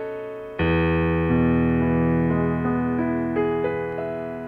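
Piano music, played slowly: a full chord with a low bass is struck about half a second in and held, with single melody notes added above it.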